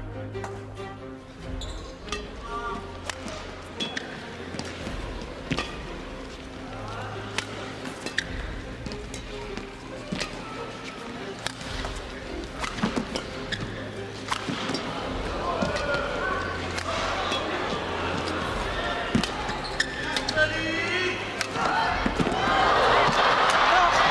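A long badminton rally: repeated sharp racket strikes on the shuttlecock and short shoe squeaks on the court floor, with crowd noise swelling near the end as the rally ends.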